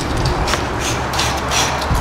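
Wind blowing across the microphone, a steady rushing noise.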